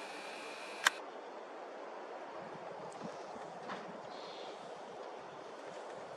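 Steady outdoor background noise, an even hiss with no clear source, broken by one sharp click about a second in and two faint ticks a few seconds later.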